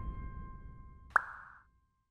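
The tail of a short music sting dies away, then about a second in comes a single quick pop sound effect that glides sharply upward in pitch, a cartoon-style plop.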